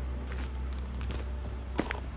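Footsteps on a dirt path with small stones: a few soft crunching steps and a sharper one near the end, over a steady low rumble.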